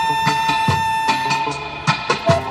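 Saxophone holding one long note that stops about one and a half seconds in, over an accompaniment with a steady beat.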